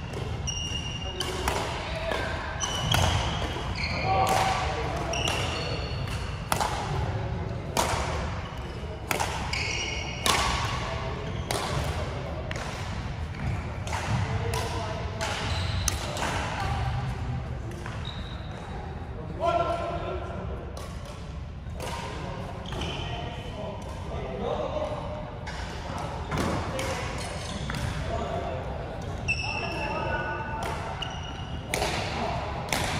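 Badminton rally in an echoing sports hall: rackets striking the shuttlecock and feet landing on the wooden court floor in quick irregular sharp hits, with short high-pitched squeaks of shoes on the floor between them.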